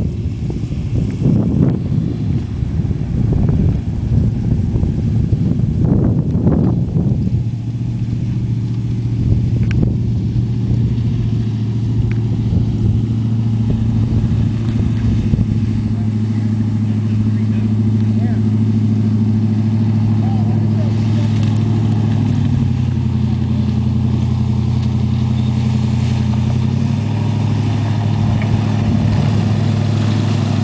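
Engine of a full-track swamp buggy running as it drives closer through the marsh. It is rough and uneven for the first several seconds, then settles into a steady low drone that shifts pitch a couple of times in the second half.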